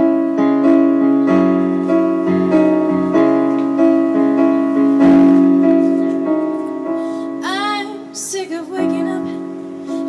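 Yamaha stage keyboard playing a slow piano part, each chord struck and left to ring before the next. A woman's singing voice comes in about three-quarters of the way through.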